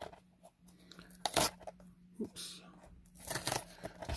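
Hands handling cardboard booster boxes and foil-wrapped trading card packs: scattered light taps, scrapes and crinkles, the loudest about a second and a half in.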